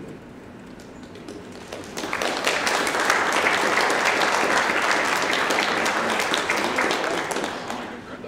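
Audience applause that starts about two seconds in and dies away near the end.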